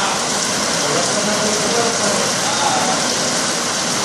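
Heavy rain pouring onto a wet street, a steady hiss, with people talking faintly in the background.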